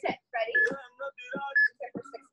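Workout interval timer beeping about once a second, a countdown, over background music and voices.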